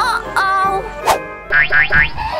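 Cartoon sound effects over children's background music: a sharp knock about halfway through, then a quick run of rising, wobbling chirps near the end, a springy boing.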